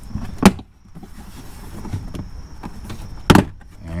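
Plastic retaining clips of a rear hatch's interior trim panel snapping loose as the panel is pulled off by hand: two sharp snaps, one about half a second in and one near the end, with faint rubbing of the plastic between.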